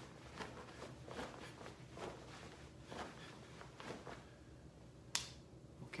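Faint, quick swishes of a martial-arts uniform's sleeves and clothing, about two a second, as arms snap through block-and-punch movements. A single sharp click comes about five seconds in.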